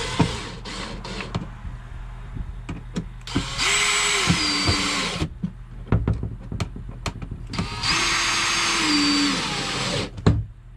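Cordless drill-driver driving screws into a wooden switch panel: two runs of the motor, each one to two seconds long, its whine stepping down in pitch near the end of each run as the screw tightens. Light clicks and handling knocks come between the runs.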